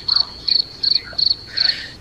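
Cricket chirping: one high note pulsed evenly, about three chirps a second, stopping shortly before the end. This is the stock 'crickets' effect that marks an awkward silence.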